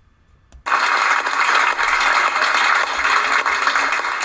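Audience applauding, starting abruptly under a second in and holding steady.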